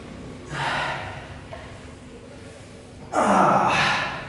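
A weightlifter's hard breaths during barbell back squat reps: a short breath about half a second in, then a louder, longer exhale about three seconds in.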